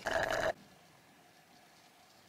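A short slurp of an iced blended coffee sucked up through a straw, lasting about half a second, followed by near silence.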